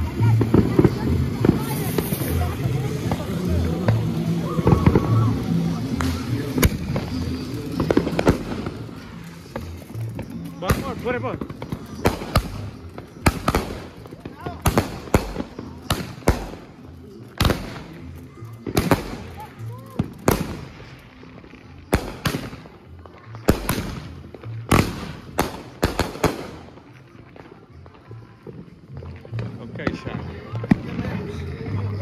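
Fireworks going off: a run of sharp bangs at irregular intervals, about one or two a second, starting about ten seconds in and stopping near the end.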